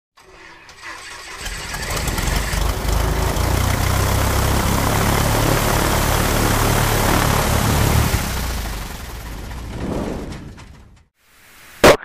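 An engine sound that builds up over the first few seconds, runs steadily, then dies away with a brief swell before stopping about eleven seconds in.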